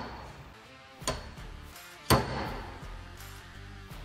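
Two sharp pops about a second apart as PDR cold glue tabs, pulled by hand, snap off the car's sheet-metal body panel; the second leaves a brief metallic ring. Faint background music plays underneath.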